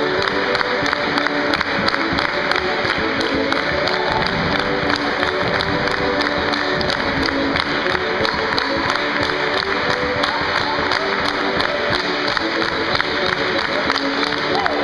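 Russian folk dance music played over loudspeakers, with hands clapping along to the beat and cheering and shouts.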